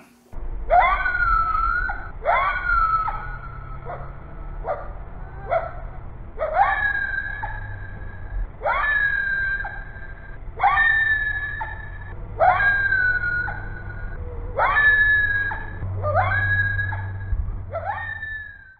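Coyote howling: a series of about ten calls roughly two seconds apart, each sliding sharply up in pitch and then holding a high note for about a second.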